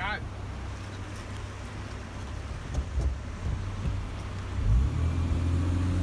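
4x4 truck's engine running, heard from inside the cab, with a few knocks from the vehicle; about three-quarters of the way in the engine works harder and grows louder.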